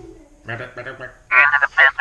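A man's voice imitating the Imperial probe droid's strange electronic call. A few quieter sounds come first, then two loud, high-pitched cries in the second half.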